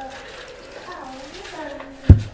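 A faint, high, wordless voice rising and falling in pitch.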